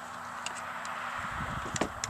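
A plastic solar charge controller with its leads attached is handled, with a few faint ticks, then set down on a wooden board with a sharp knock near the end. A low rumble and a steady hiss of outdoor background run underneath.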